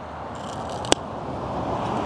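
A bite snapping through a raw carrot, one sharp crack about a second in, amid the crunching noise of chewing.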